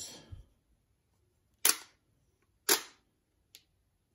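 Nikon D3 shutter firing twice, about a second apart, each a sharp clack. A faint click follows near the end.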